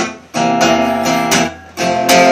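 Acoustic guitar strumming chords between sung verses, broken twice by brief stops where the strings are damped.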